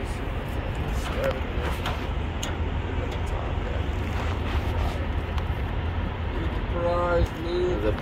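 Steady low outdoor rumble, with a few faint metallic clicks from needle-nose pliers working at the spindle nut and cotter pin of a trailer wheel hub, which is being taken apart over a bad wheel bearing.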